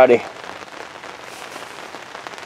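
Rain falling steadily, an even hiss with scattered drops ticking.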